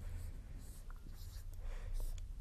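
Marker pen drawing on a whiteboard: a few short, faint strokes as lines are drawn.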